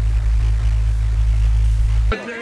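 A loud, steady, deep electronic drone holding one pitch, with no speech over it.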